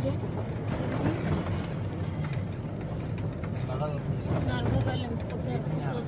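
Steady low road and engine rumble of a moving vehicle, heard from inside it, with faint voices talking briefly about four seconds in.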